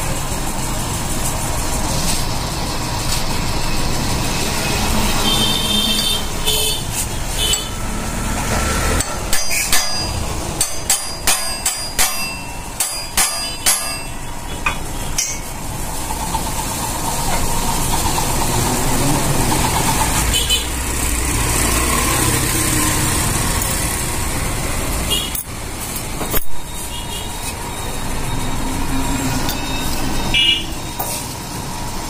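Steady workshop and traffic background noise, broken by a quick run of sharp metal clanks and taps about a third of the way in and one louder knock later, from steel crankshaft parts and tools being handled on a steel press bed.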